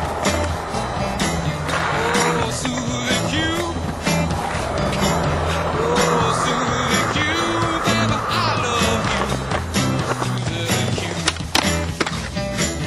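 Skateboard wheels rolling and clacking on a concrete skatepark, mixed under a music track with a steady bass line.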